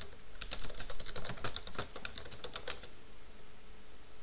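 Typing on a computer keyboard: a quick run of keystrokes lasting about two and a half seconds, then it stops.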